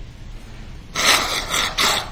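A man blowing his nose into a tissue: three quick, loud blasts about a second in.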